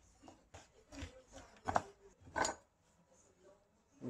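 A kitchen knife knocking on a wooden chopping board while guanciale is cut into small pieces: a few separate knocks, with two louder clacks a little past halfway.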